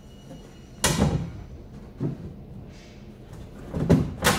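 Moulded fibreglass blackwater tank being pushed and shifted against its hull compartment during a test fit: a sharp hollow knock about a second in, a smaller one near two seconds, and the loudest knock at the end.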